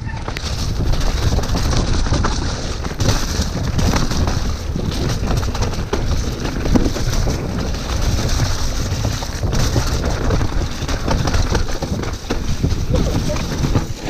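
Mountain bike descending a muddy forest trail, heard from a camera on the rider: a continuous rumble of tyres over mud and roots with constant rattling clatter from the bike, and wind buffeting the microphone.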